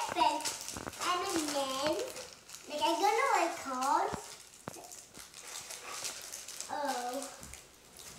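Children's high voices talking in short stretches, with a few sharp clicks and crinkles from candy wrappers being handled.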